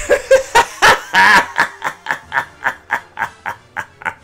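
The Joker's cackling laugh: a run of sharp "ha" bursts with one long, loud peak about a second in, then evenly spaced laughs at about four a second that steadily fade away.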